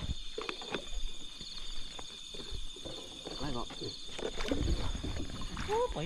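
Night insects such as crickets keeping up a steady high trill, with a faster pulsing trill through the middle. Low voices talk quietly underneath, and a short exclamation comes near the end.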